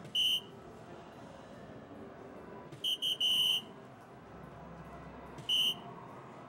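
DARTSLIVE electronic soft-tip dartboard beeping as each of three darts scores on the 20: a short high beep just after the start, a longer three-part tone around the middle for the triple 20, and another short beep near the end.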